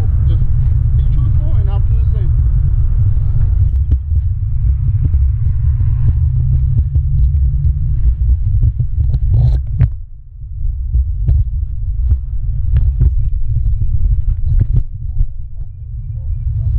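Steady low rumble on a motorcyclist's helmet-mounted camera, with faint voices in the background and a few sharp clicks about nine seconds in.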